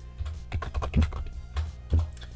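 Typing on a computer keyboard: a short, irregular run of keystroke clicks as a word is typed in.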